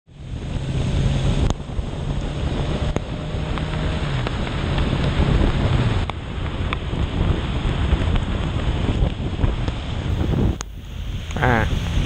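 Wind rushing over the helmet-camera microphone while riding a Honda CB650 motorcycle on a wet road, with the inline-four engine's low hum underneath and a few sharp clicks. A man's voice starts near the end.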